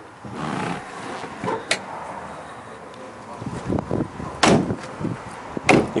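Rustling and knocking as someone climbs out of a pickup truck's cab, with a sharp click and then two loud thumps about a second apart near the end, the truck's door being shut.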